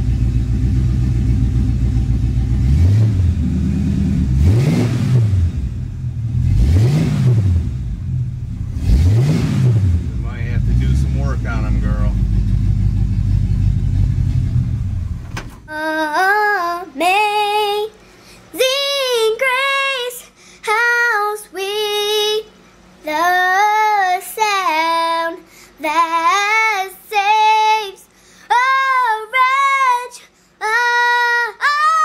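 An old Chevrolet pickup's engine running just after being started, revved up and back down four times. About halfway through, the engine cuts off abruptly and a young girl sings unaccompanied in short phrases.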